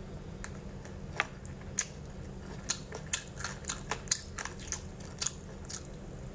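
Close-miked chewing of sticky sesame-glazed pork: a string of irregular sharp clicks and crackles from the mouth, mostly from about a second in, over a steady low hum.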